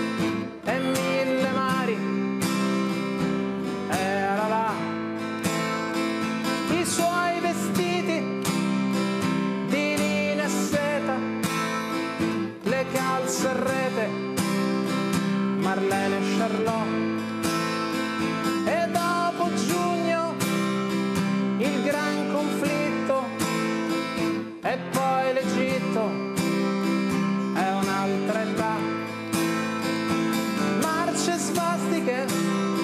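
Acoustic-electric guitar strumming chords in a steady rhythm.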